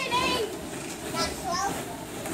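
Young children shouting and squealing as they play in a ball pit, over a steady clatter of plastic balls being thrown and stirred.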